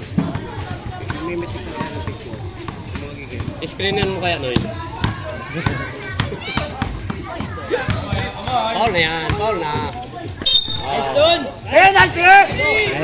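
A basketball being dribbled on an outdoor concrete court: repeated irregular bounces, with crowd voices around it.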